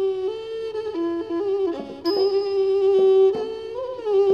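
A so u, the low-pitched Thai two-string fiddle with a coconut-shell body, plays a slow melody of long held notes, sliding slightly between pitches. A short high-ringing strike sounds about halfway through.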